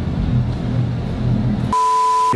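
Low background music, then near the end a steady high test-tone beep with static hiss: the TV colour-bars 'technical difficulties' sound effect used as a transition.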